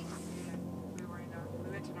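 Steady low drone of a moving car's engine and road noise, heard inside the cabin.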